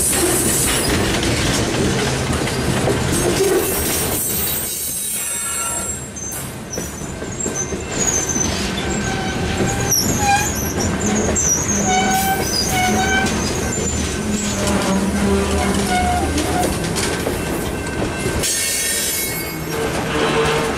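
Freight train covered hopper cars rolling past at close range: a steady rumble and clatter of steel wheels on the rails. From about eight seconds in come short, intermittent high pitched squeals from the wheels.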